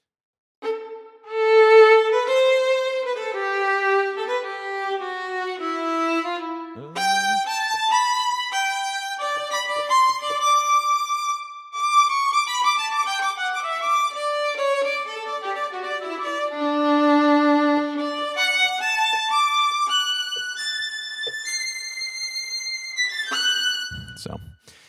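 Sampled solo violin from the CineStrings Solo Violin 2 patch, played from a MIDI keyboard: a flowing legato melody that descends through the middle and climbs to high notes near the end.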